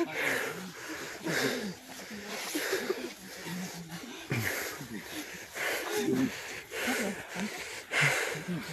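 Heavy, wheezing breaths close to the microphone, coming about once a second, with indistinct voices of people nearby. The breather is winded from the walk and says he must quit smoking.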